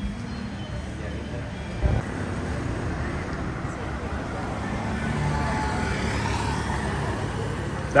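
Night street traffic: a steady hum of passing motor scooters and cars, with indistinct voices in the background and a single thump about two seconds in.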